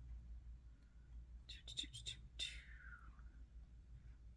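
A woman whispering "toot toot toot toot" softly under her breath: a quick run of short syllables about one and a half seconds in, then a sound that falls in pitch.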